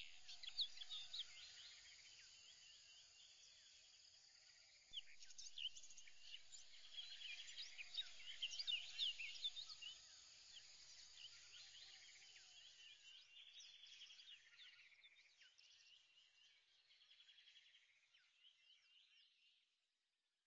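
Faint birdsong from many birds, short chirps and trills overlapping, louder a few seconds in and then fading out by the end.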